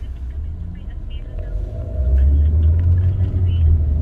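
Low rumble of a car's engine and road noise heard from inside the cabin, getting louder about two seconds in.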